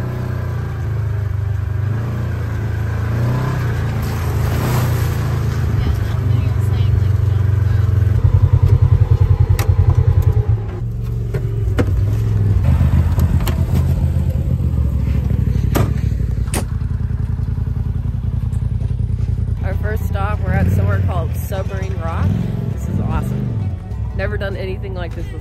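An off-road side-by-side's engine runs steadily as it drives over a rough dirt trail, with scattered knocks and rattles. It pulses louder for a few seconds about a third of the way in. Voices can be heard near the end.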